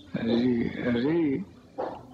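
A voice speaking briefly, about a second and a half of words that the recogniser did not write down, pitched and rising and falling like speech.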